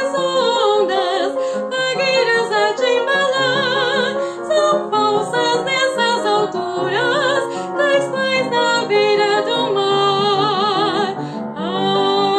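Female classical singer singing with wide vibrato, accompanied by an upright piano. Near the end she breaks briefly for breath and then glides up into a new held high note.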